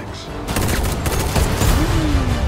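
Action-film trailer soundtrack: a rapid volley of gunfire over music, starting about half a second in after a brief quieter moment.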